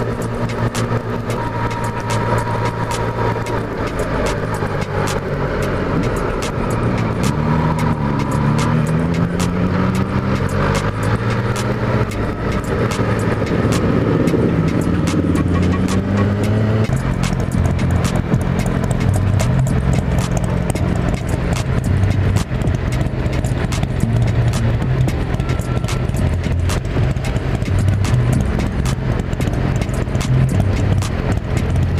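Motorcycle engine running while riding, heard from the rider's helmet. Its pitch rises and falls with throttle and gear changes partway through, then it runs low and steady.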